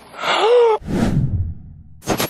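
A man's short, high-pitched vocal cry, like a gasp, rising then falling in pitch, followed by a breathy exhale that fades away.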